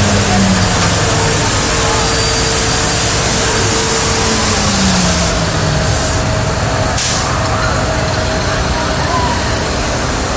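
Loud, steady street noise of a crowd's voices mixed with vehicles going by, including a truck passing close below. A single sharp knock about seven seconds in.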